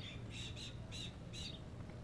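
A bird calling, four short high calls in quick succession in the first second and a half, over a low steady background rumble.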